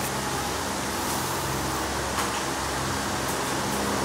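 Steady mechanical hum and hiss of room background noise, with one faint click about two seconds in.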